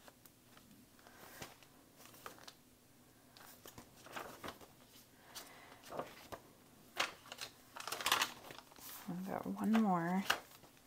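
Paper pages of a handmade junk journal rustling and flapping as they are turned by hand: scattered soft rustles, with sharper page flaps in the second half. Near the end a person gives a short hum.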